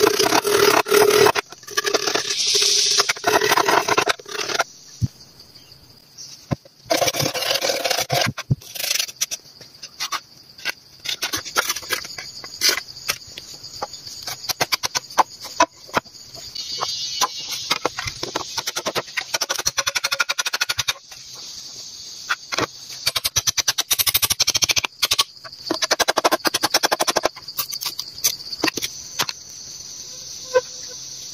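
Green bamboo being cut and worked by hand with a blade: irregular chopping, scraping and knocking of bamboo, with louder stretches of cutting near the start and again about seven seconds in. A steady high insect drone runs underneath from about five seconds in.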